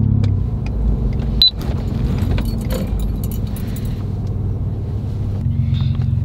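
Inside the cab of a 2019 Ford F-150 with a 3.5-litre EcoBoost V6, driving: a steady low engine and road hum, with light rattling clicks and one sharper click about one and a half seconds in.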